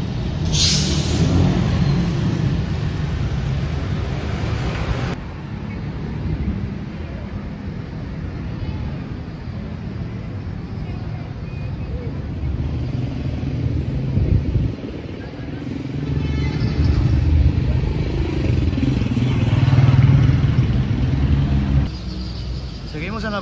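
Road traffic on a busy city avenue: cars and vans passing, with a continuous low rumble. It is loudest in the first few seconds, drops abruptly about five seconds in, and swells again near the end.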